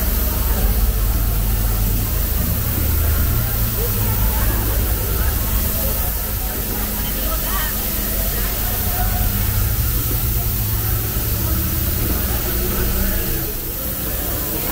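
Loud, steady low rumble with a hiss from the sound effects of a themed podracer-engine roasting pit, over crowd chatter. It is very loud in here.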